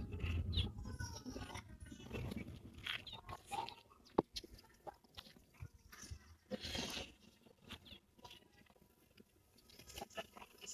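Faint, irregular rustling and crunching of clothes being handled and hung on a clothes-drying rack, with one sharp click about four seconds in.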